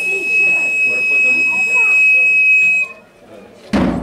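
A steady high whistle-like tone holds for about three seconds over a crowd's voices and stops abruptly. Near the end a large bass drum is struck once, heavily.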